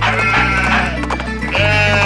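Sheep bleating twice, each a wavering baa, one at the start and another near the end, over a cheerful children's song backing with a steady bass line.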